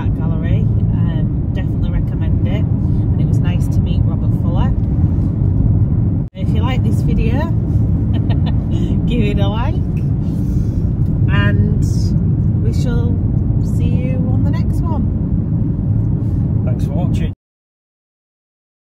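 Steady low road and engine rumble inside the cabin of a moving car. It drops out briefly about six seconds in and cuts off suddenly near the end.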